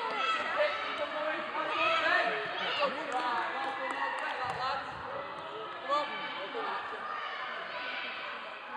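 Children and adults calling out and chattering, echoing in a large sports hall, with a few thuds of running feet and a rugby ball on the wooden floor.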